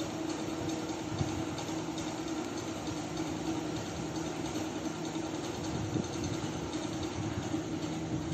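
A steady mechanical hum with a constant low tone, unchanging throughout.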